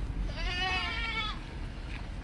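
A young goat bleats once: a single wavering call about a second long.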